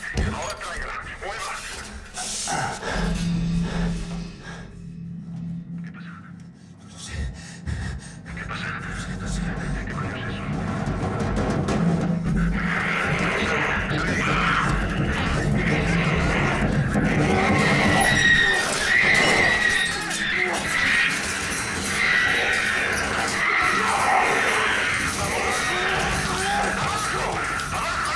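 Shouted voices over a low steady hum, building about twelve seconds in into a loud, shrill, chaotic din with squealing.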